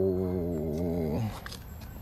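A man's long, drawn-out vocal sound, wavering and sliding down in pitch, that stops just over a second in.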